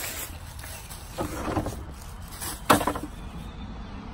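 Handling and rustling at a plastic trash bin as a bag of litter goes in, then one sharp knock near three seconds in, typical of the bin's plastic lid dropping shut.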